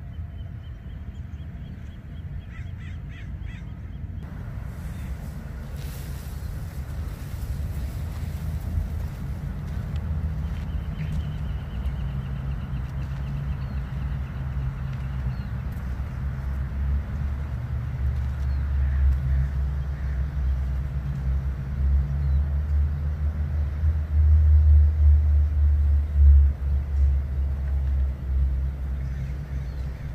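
Low, steady engine rumble growing louder, loudest near the end, with a crow cawing a few times in the first seconds.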